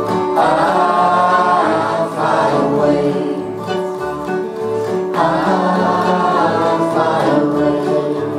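Live acoustic gospel music: several voices singing together in harmony over strummed acoustic guitars and mandolin.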